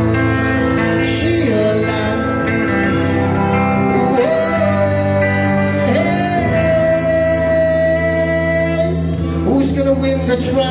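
Electric guitar music with singing, over a steady bass; a long sung note is held from about six to nine seconds in.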